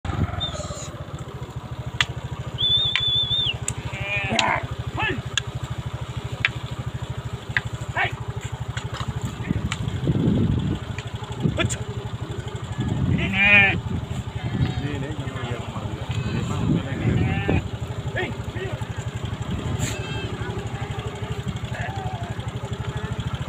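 Motorcycle engine idling with a steady fast pulse, while sheep and goats in the surrounding flock bleat several times, the loudest bleat about two-thirds of the way through. A brief high whistle sounds about 3 s in.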